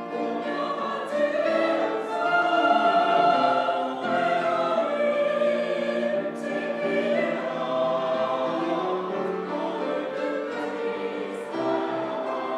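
Mixed church choir of men's and women's voices singing a hymn anthem in harmony with piano accompaniment, holding long sustained notes.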